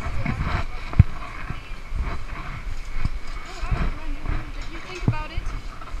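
Wind buffeting a camera microphone, with a sharp knock about a second in and several duller thumps from the harness and body-worn camera being handled. Faint voices talk in the background.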